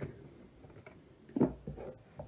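Quiet handling sounds as a box is rummaged for a card, with one sharp knock about a second and a half in.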